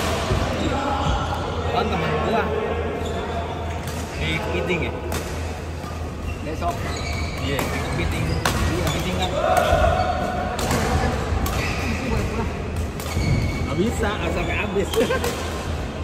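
Badminton rally on a wooden court in a large, echoing hall: a string of sharp racket strikes on the shuttlecock, with footwork and a short shoe squeak on the floor.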